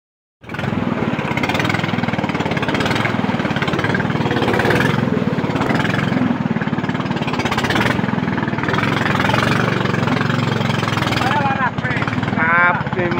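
A small boat's motor running steadily while the boat is under way, with a continuous close engine note. A voice starts near the end.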